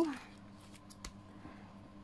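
Soft rustle of paper pages being turned in a ring-bound planner, with a faint click about a second in.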